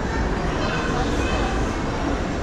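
Steady background din of a busy indoor food court, with faint distant voices.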